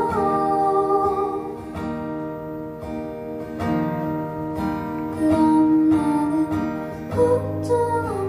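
Solo female voice singing over a strummed acoustic guitar, played live.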